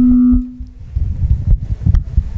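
A steady single-pitch ringing tone from the hall's PA system, typical of microphone feedback, that cuts off under a second in. It is followed by a low room rumble with two soft knocks from the handheld microphone being handled.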